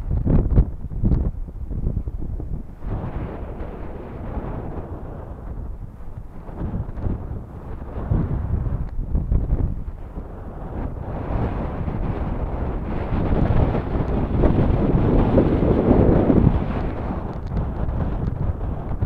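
Gusty wind buffeting the microphone: an uneven low rumble that comes in bursts, with strong blasts in the first second and a long swell that peaks near the end.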